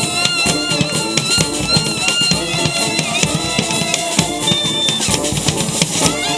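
A brass street band with sousaphones and saxophones plays live, holding pitched horn lines over a steady drum beat.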